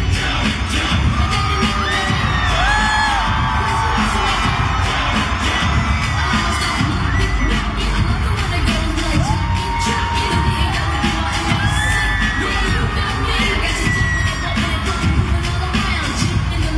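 Live pop concert music played loud, with a crowd of fans screaming and cheering over it. Several long, high screams stand out above the music.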